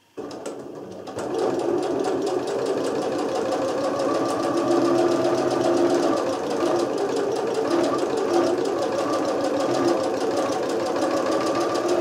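A Janome computerized sewing machine with a drop-in bobbin stitching through fabric: a steady, rapid stitching rhythm that is softer for about the first second, then runs evenly. The owner says the machine runs heavy and sometimes jerks, and she puts this down to lint from sewing wool coat fabric clogging the bobbin area.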